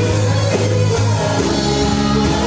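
Live worship band playing a praise song: drum kit, electric bass, electric guitar and keyboard, with singers leading on microphones.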